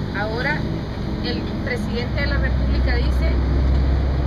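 Low engine rumble of a passing motor vehicle, growing louder about halfway through, under quiet talking.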